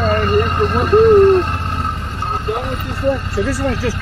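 Motorcycle engine idling steadily, with a voice talking faintly and indistinctly over it.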